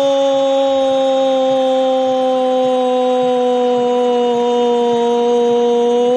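A radio football commentator's goal call: one long, loud, held shout of 'gol' on a steady pitch that sinks slowly.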